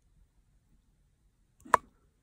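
A single short, sharp plastic pop near the end, from a wet plastic syringe nozzle and clear tube being forced together; otherwise quiet.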